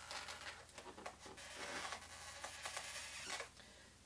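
Black Sharpie marker drawing on a latex balloon: a faint scratchy rubbing in a run of short strokes.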